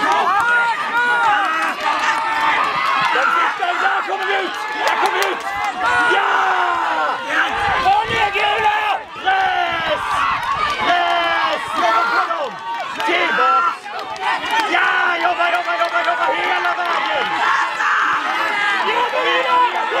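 Several voices shouting encouragement and calls to tug-of-war pullers, overlapping and continuous, with crowd cheering.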